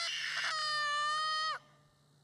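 A person's voice shouting one long, high-pitched call, held almost level for about a second and a half before cutting off. It is a call shouted out loud in the mountains to make it echo.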